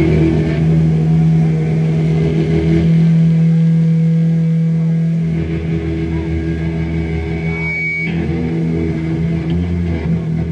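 Distorted electric guitar holding one low note through the amplifier as a steady drone, its tone shifting about eight seconds in.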